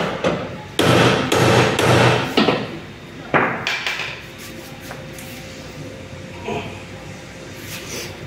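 About five heavy metallic clunks with a short ring in the first few seconds, then lighter clatter, as a bare aluminium Nissan MR20DE short block on an engine stand is handled and turned by hand.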